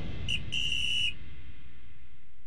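A whistle blown twice, a short blast and then a longer one of about half a second, at a steady high pitch, while the low rumble of the preceding music dies away.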